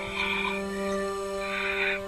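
Film background music: a sustained synthesizer-like chord held steady, with two short raspy bursts over it, one just after the start and a longer one near the end.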